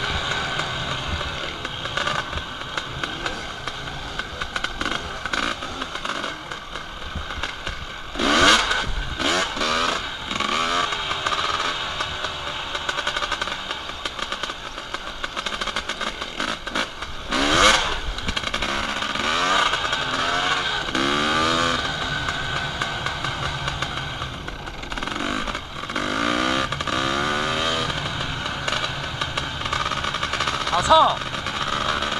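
Dirt bike engine heard up close from the moving bike, the throttle opened and closed again and again so that its pitch keeps rising and falling over a steady rush of noise. Two loud short bursts of noise stand out, about eight and seventeen seconds in.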